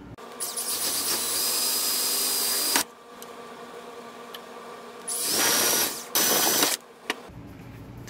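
Hercules power drill boring through 1½-inch PVC pipe held in a vise: one steady run of about two and a half seconds, then a second, shorter run about five seconds in, broken by a brief stop.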